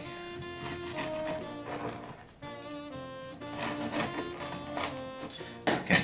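Background music with held guitar-like notes, over the repeated rasp of a serrated bread knife sawing back and forth through the hard crust of a biscotti loaf.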